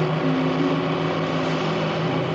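A steady rushing noise sound effect over soft background music with long held notes.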